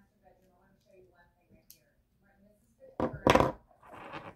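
Small objects being handled: quiet for about three seconds, then a couple of loud knocks followed by softer clattering.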